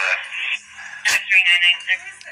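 Handheld police radio: a sharp click about a second in, then a brief burst of thin, narrow-band radio voice.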